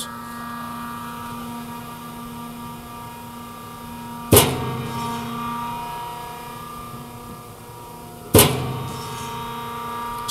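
Winmill REAL PITCH pitching machine's wheels spinning with a steady hum, and two sharp pops about four seconds apart as it fires 80 mph curveballs through the wheels.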